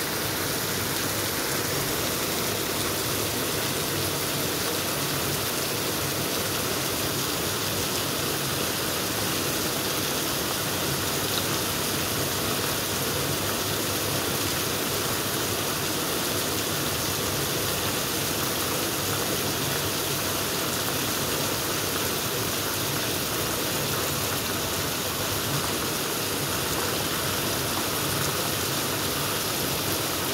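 Heavy rain falling steadily on a paved street and parked cars, a continuous even hiss of rain that does not let up.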